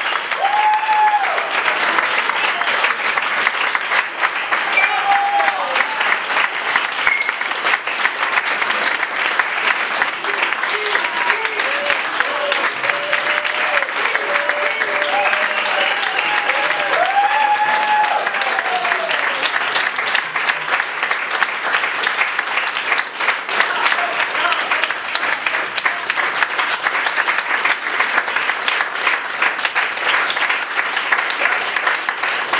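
A roomful of people applauding, dense and steady throughout.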